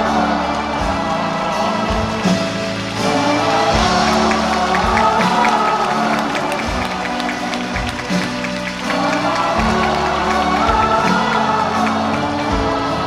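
Live band music with a steady drum beat and a voice singing over it, with some crowd noise.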